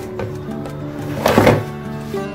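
Background music, with a single short knock about one and a half seconds in as a metal box grater is handled in a plastic bowl.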